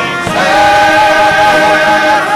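Church choir singing a gospel hymn with instrumental accompaniment, holding long sustained notes; the sound swells louder about a third of a second in.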